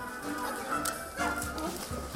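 Sea lion barking over background music.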